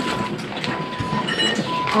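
A patient monitor's alarm tone sounding on and off at one steady pitch, with two short higher beeps about three-quarters of the way through, over the room's background noise.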